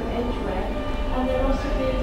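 Steady low rumble of a London Underground Jubilee line 1996 Tube stock train at a platform, with indistinct voices over it.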